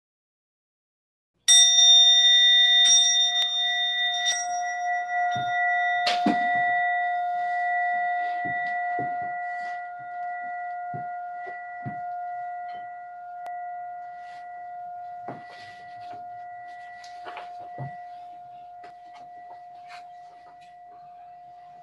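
A bell struck once about a second and a half in, its clear steady tones ringing on and slowly fading, with a few faint soft knocks while it rings.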